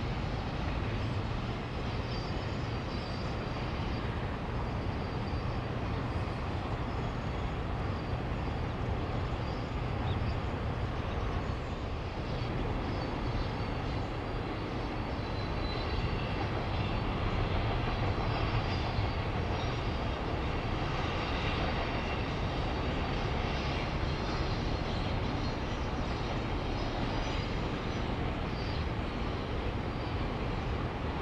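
Double-stack intermodal container freight train rolling past at a distance: a steady low rumble of wheels on rail, swelling slightly about halfway through.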